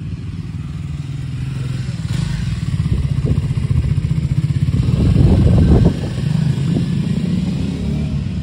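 Triumph Scrambler 400 X's liquid-cooled single-cylinder engine pulling away and riding past with a pulsing exhaust note. It grows louder up to about five or six seconds in, then drops off suddenly.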